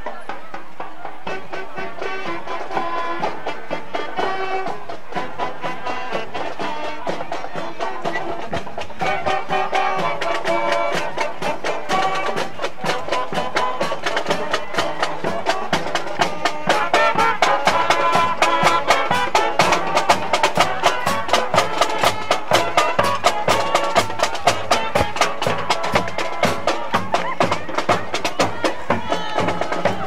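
High school marching band playing on the march: horns carrying a tune over a steady beat of snare and bass drums. The drumming grows louder and more insistent about halfway through.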